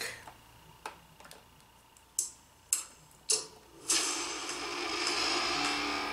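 Movie trailer soundtrack played back: four sharp ticks spaced out over the first few seconds, then from about four seconds in a sustained musical drone of held tones.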